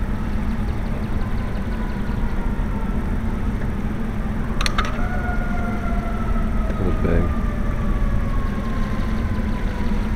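Steady low rumble of outdoor background noise, with a faint whine slowly falling in pitch and a brief sharp click about halfway through.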